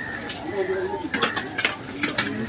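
A few short, sharp clinks and knocks in the second half, with a brief voice in the background before them.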